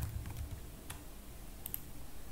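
Computer keyboard being typed on: a few separate keystrokes, a sharp one at the start, one about a second in and a quick pair near the end.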